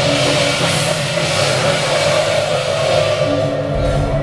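Temple procession percussion: a troupe's large hand cymbals clashing continuously with drums, loud and unbroken.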